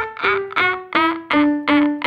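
A woman's voice singing short, strong staccato 'ah' notes with the tongue stuck out, cry-like in tone. There are about five or six notes in a run that steps down in pitch, over a sustained keyboard accompaniment.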